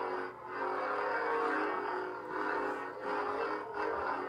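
Proffie NeoPixel lightsaber's sound font playing through the hilt's speaker: a steady electric hum that swells and fades several times as the blade is swung.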